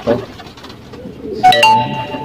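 Pigeons cooing softly in a low murmur. About one and a half seconds in, a sharp bell-like ding rings out with clear ringing tones and slowly fades.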